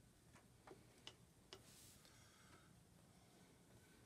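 Near silence with four faint, light taps in quick succession over the first second and a half: a paintbrush dabbing paint onto paper on an easel.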